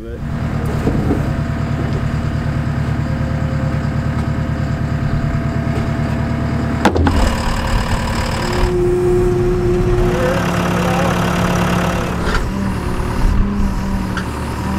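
Diesel engines of heavy equipment, a JCB 270T compact track loader and a backhoe, running steadily. About seven seconds in there is a sharp knock, after which the engine note shifts and wavers up and down as the machines work.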